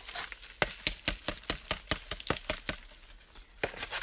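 Dry leek foliage crackling and snapping as it is handled: a quick run of sharp crackles, about a dozen in two seconds, then a few more near the end.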